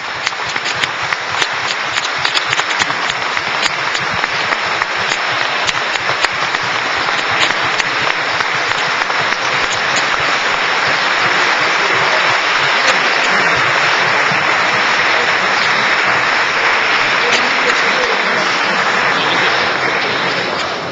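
Large audience applauding. The clapping builds over the first several seconds, holds steady, and begins to ease off near the end.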